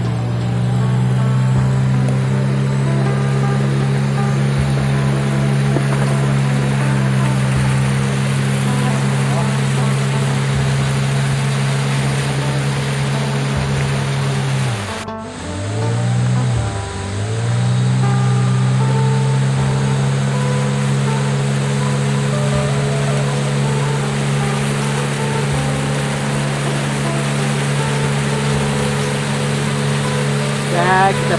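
A longboat's outboard motor running at steady cruising revs, the water rushing along the hull. About halfway through, the revs drop briefly twice and pick up again.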